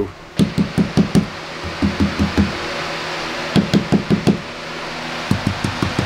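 A hand knocking on van body panels lined with Kilmat mat and sprayed LizardSkin sound deadener, in four quick runs of four or five dull knocks. The knocking tests how well the deadener damps the panels.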